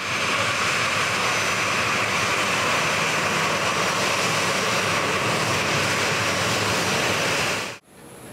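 Jet engines of a Boeing 737 airliner running at low taxi power as it rolls onto the stand: a steady, even rush with a faint high whine, cutting off just before the end.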